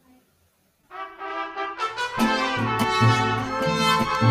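Mariachi band opening a song: trumpets play the introduction from about a second in, and the rest of the band joins with a bass line about two seconds in.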